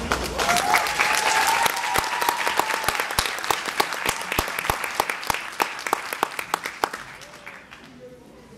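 Audience applauding as a dance number ends, dense at first and thinning out until it dies away near the end, with one long high cheer rising over the clapping in the first few seconds.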